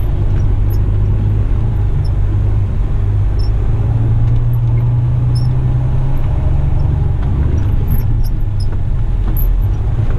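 A Western Star truck's diesel engine running at low speed, heard from inside the cab as a steady low drone. Its pitch shifts a few times as the revs change, about a third of the way in and again about two-thirds in.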